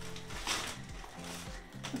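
Thin plastic carrier bag rustling and crinkling as a boxed item is pulled out of it, with a burst about half a second in, over quiet background music.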